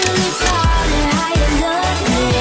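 Pop song playing: a steady beat of deep kick drums under a sustained melodic line.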